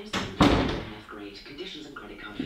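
A single loud thump about half a second in, dying away quickly, with low voices murmuring around it.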